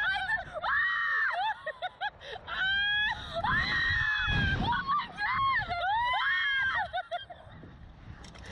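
Two women screaming on a Slingshot reverse-bungee thrill ride as the capsule is flung into the air: three long, high held screams with laughter between them.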